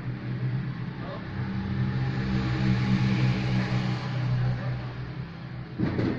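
A motor vehicle's engine passing nearby, its hum swelling to a peak around the middle and then fading away. A short sharp knock just before the end.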